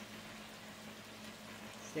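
Vegetables simmering in broth in a frying pan on a gas burner: a faint, steady bubbling hiss with a low hum underneath.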